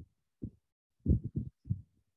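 A few soft, muffled low thumps, about five, irregularly spaced with the loudest a second in.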